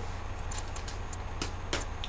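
A pause in talk filled by a steady low background hum, with a few faint short clicks about half a second in and near the end.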